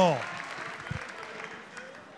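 Scattered applause from the benches, dying away after the last word of a man's spoken phrase.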